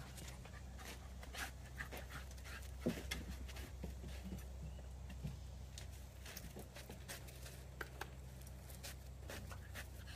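Labrador puppy panting, with scattered light clicks and a sharper tap about three seconds in, over a steady low hum.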